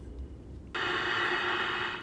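Vintage E.F. Johnson Messenger CB radio being switched on: about three-quarters of a second in, a steady hiss of receiver static starts suddenly from its speaker.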